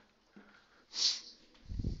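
A man sniffing once through his nose, a short hiss about a second in, followed near the end by a brief low puff of breath.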